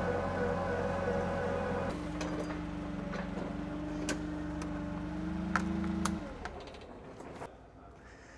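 Forklift engine running with a steady hum; its note changes about two seconds in, and it dies away about six seconds in.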